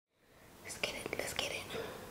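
Quiet whispered speech, a few short hissy words starting about half a second in.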